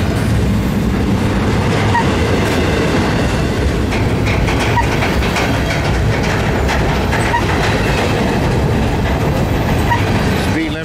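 Double-stack intermodal well cars rolling past close by: a loud, steady rumble and clatter of steel wheels on the rails.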